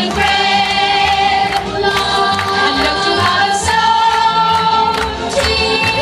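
A group of voices singing held, wavering notes together over an accompaniment with a steady beat.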